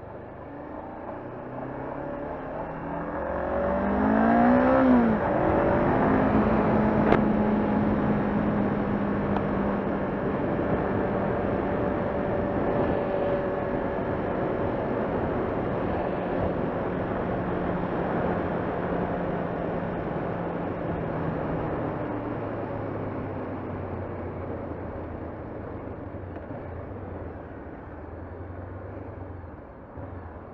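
A Honda CBR500R's parallel-twin engine heard from the rider's seat, rising in pitch for about five seconds as the bike accelerates, then holding a steady note while cruising. Its note drops lower in the last several seconds as the bike slows, all over steady wind and road rush.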